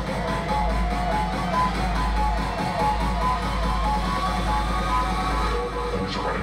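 Dance music from a DJ's set playing loudly: a steady deep bass under a repeating melody of short high notes.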